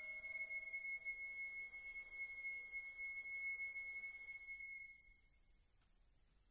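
A high sustained note from the chamber ensemble dies away over about five seconds, with a lower note fading out within the first second. It leaves near silence.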